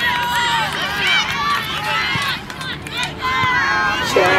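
Indistinct voices of soccer players and spectators calling out during play, several short overlapping shouts with no clear words.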